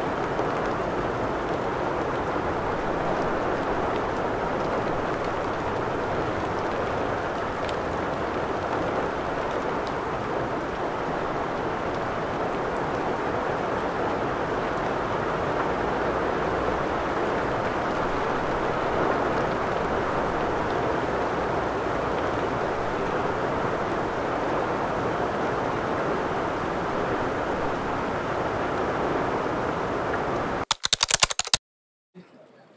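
Steady rain falling: an even, unbroken hiss of precipitation that holds the same level throughout.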